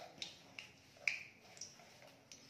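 Hot oil with a little sugar just added, crackling in an iron kadai: about four sharp pops over a faint sizzle. The sugar is being browned in the oil to give the curry colour.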